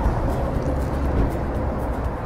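Steady low outdoor rumble, like street traffic, with no distinct events.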